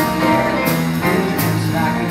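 A small live band of electric bass, electronic keyboard and drum kit playing an instrumental stretch of a swing tune, with cymbal strokes about every two-thirds of a second over walking bass and keyboard chords.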